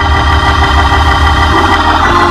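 Organ holding sustained chords over a steady deep bass, accompanying a hymn.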